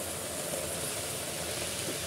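Hot water poured onto hot roasted rice and lentils in an aluminium pressure cooker, sizzling steadily as it turns to steam.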